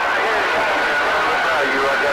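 Received CB radio audio: several voices talking over one another, too unclear to make out, with a steady high-pitched whistle running under them.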